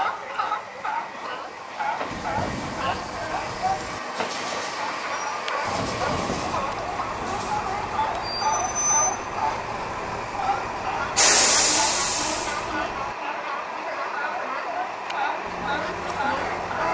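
A group of sea lions barking continuously, many short calls overlapping. About eleven seconds in, a loud hiss lasting about two seconds cuts across them.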